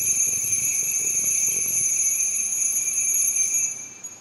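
Altar bell ringing steadily at the elevation of the host during the consecration, the signal that the host is being shown to the people; the ringing fades out near the end.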